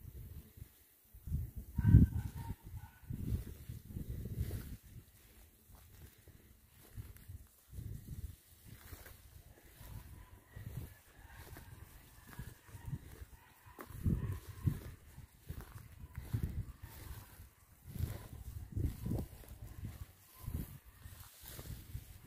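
Outdoor ambience: irregular low rumbling gusts on the microphone, loudest about two seconds in, with a few faint, brief distant animal calls.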